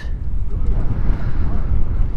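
Strong wind buffeting the microphone: a loud, low, gusting rumble with no engine note in it.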